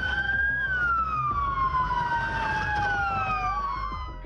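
Two police sirens wailing together, each gliding slowly up and down in pitch out of step with the other, so that their tones cross.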